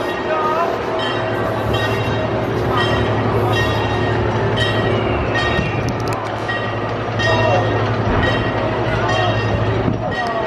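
Amusement-park ride machinery with a steady low hum and a regular clacking a little more often than once a second, over crowd chatter.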